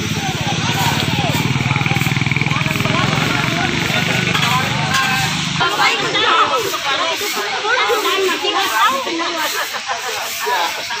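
Many people talking at once, with a vehicle engine running steadily underneath. The engine cuts off suddenly a little past halfway, leaving only the overlapping voices.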